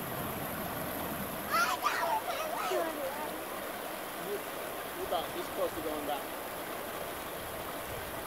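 River water rushing steadily over a rock ledge and through shallow rapids. Faint, distant voices call out about two seconds in and again about five seconds in.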